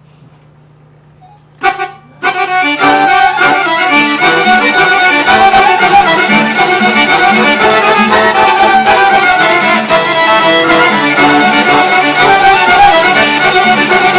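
Albanian folk ensemble of violin, accordion and a plucked long-necked lute starting to play about two seconds in, after a short opening note, then playing on steadily together.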